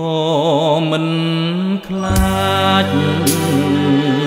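Music: a man's voice sung with wide vibrato on a held note, over an instrumental backing with a bass line coming in about halfway and a few cymbal-like strikes.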